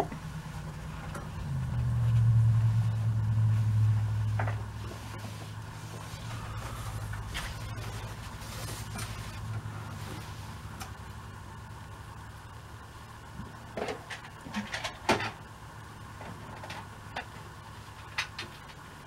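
A low rumble swells about a second in and fades away over several seconds. It is followed by faint rustling and a few light clicks as a cotton hem is folded and smoothed by hand on an ironing board.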